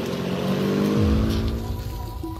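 An engine-like sound effect: a pitched drone rising slowly in pitch, with a deep low rumble coming in about a second in.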